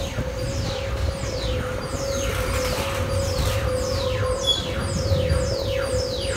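Space Mountain roller coaster's electronic sound effects: a steady hum under falling sweeps that repeat about every two-thirds of a second, over the low rumble of the moving coaster train.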